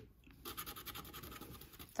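A plastic scratcher tool scratching the coating off a scratch-off lottery ticket: a faint, rapid run of short strokes starting about half a second in.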